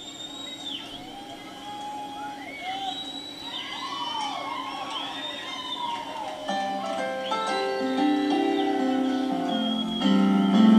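Live band's song intro: arching, gliding tones rise and fall for the first six seconds, then sustained keyboard chords come in about six and a half seconds in and grow louder.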